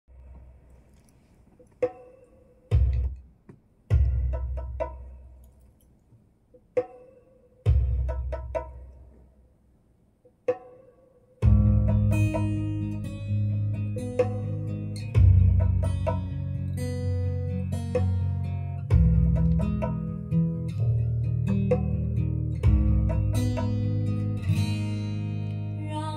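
Recorded music playing through large horn loudspeakers driven by a tube amplifier, picked up in the room. It is the quiet intro of a ballad: sparse plucked-string notes with deep bass swells. About eleven seconds in, the full accompaniment comes in.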